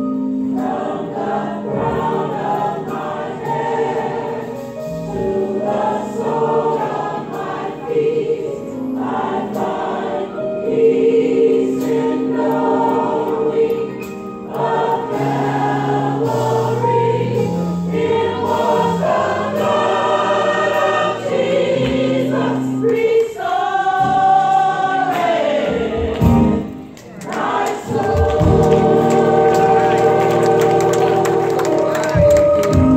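Gospel mass choir singing in harmony over organ accompaniment, with sustained bass and chord notes under the voices. The sound thins briefly near the end before the full choir comes back in.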